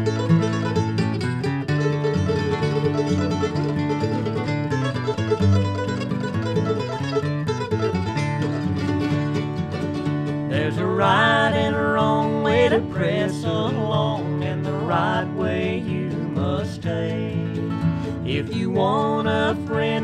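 Mandolin and acoustic guitar playing together in a bluegrass-style instrumental introduction; about ten seconds in, a woman and a man join in singing in harmony over the picking.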